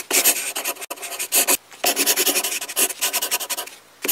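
Pen scratching on paper as a signature is written: a run of quick, rasping strokes with a short pause about a second and a half in.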